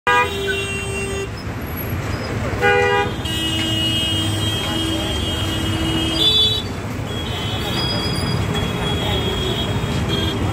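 Dense city road traffic: engines rumbling steadily under repeated car and motorbike horn honks. There is a loud honk at the start and another a little before 3 s, then longer held horn blasts through the rest.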